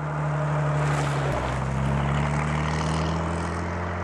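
Rat rod's engine driving past close by, its note dropping in pitch as it passes about a second in, then easing slightly as it moves away.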